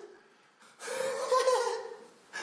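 A man's loud, breathy gasping laugh. It starts about three-quarters of a second in and lasts about a second.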